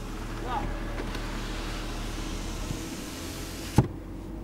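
Car engine idling, heard as a steady low hum inside the cabin, with one sharp knock shortly before the end.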